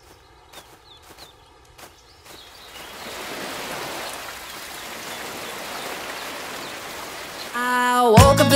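Water spraying, a steady hiss that builds up from about two and a half seconds in. Before it come a few soft ticks about every half second, and music starts just before the end.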